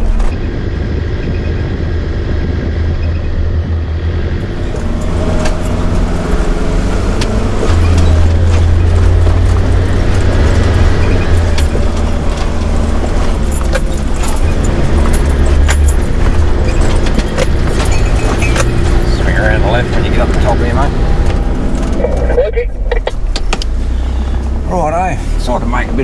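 Nissan Patrol 4WD driving along a rough dirt track: the engine runs steadily under a low hum while loose gear in the vehicle rattles and clicks over the bumps.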